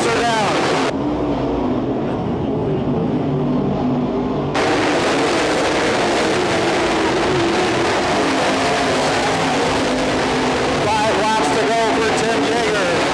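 Several dirt modified race cars' V8 engines running hard on a dirt oval, their pitch rising and falling as they go through the turns. For a few seconds near the start the sound turns duller.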